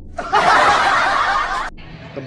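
A burst of laughter added as a sound effect, starting suddenly and cutting off abruptly after about a second and a half.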